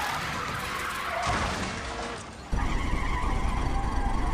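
Cartoon sound effects of a racing car: rushing engine and tyre noise, jumping suddenly to a louder, steady low rumble about two and a half seconds in.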